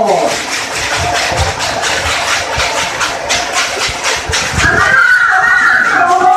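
A voice ends a long, falling call right at the start. Then come a few seconds of crowd noise full of sharp clicks and knocks. About five seconds in, a group of voices starts singing.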